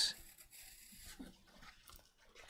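Near silence with faint scratching of a graphite pencil on watercolour paper.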